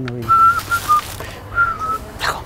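A man whistling: a few short, high notes at nearly one pitch, in two brief phrases, the second beginning about a second and a half in.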